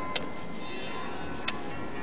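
Faint steady background music, with two short sharp clicks: one near the start and another about a second and a half in.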